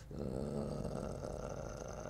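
A man's quiet, low hum, held for nearly two seconds between spoken sentences.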